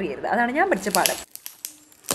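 A voice talking for about the first second, then light crinkling of metallic foil gift wrap as a child's hands press and handle a wrapped present.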